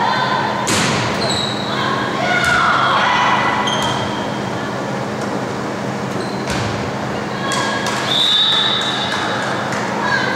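A volleyball rally in a school gym: sharp slaps of hands and forearms on the ball several times, with players and spectators shouting and calling, echoing in the hall.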